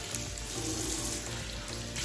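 Steady hiss of tap water running into a bathroom sink, with soft background music underneath.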